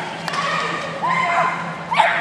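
Short, high-pitched calls and yips during a dog agility run: the handler's shouted commands mixed with the dog's barking, over a steady low hum.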